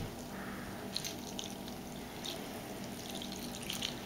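Muriatic acid poured from a plastic jug in a thin stream into a glass bowl of scrap circuit boards, faintly splashing and dripping onto the boards.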